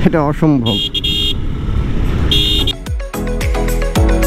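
A vehicle horn sounds twice, a high-pitched blast about a second in and a shorter one past the two-second mark, over steady motorcycle engine and road noise. Music with a beat starts about three seconds in.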